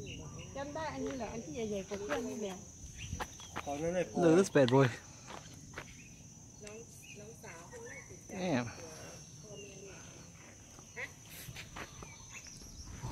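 Steady high-pitched drone of insects, with people talking in bursts over it, loudest about four seconds in and again near the middle.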